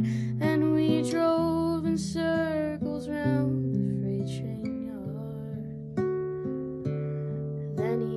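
A woman singing to her own classical guitar accompaniment, strumming chords that ring on between the sung phrases.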